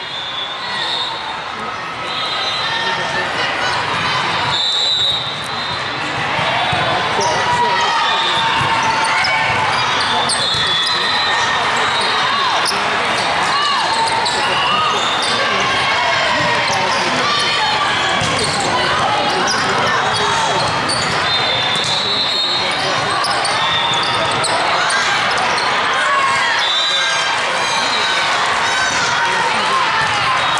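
Busy indoor volleyball hall: many overlapping voices of players and spectators echoing in a large room, with the ball being struck and bouncing on the court and shoes squeaking.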